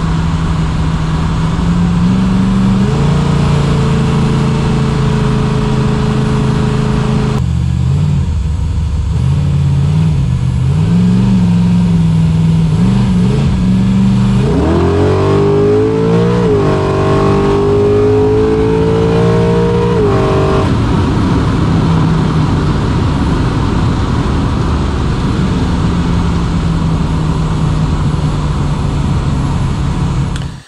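Carbureted 357-cubic-inch Gen II LT1 small-block Chevy V8 running: a raised idle for a few seconds that drops back, several quick throttle blips, then a rev up held for about six seconds before it falls back to a steady idle.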